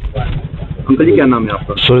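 A man speaking Hindi close to a handheld microphone, starting about a second in, over a steady outdoor background noise with a low rumble.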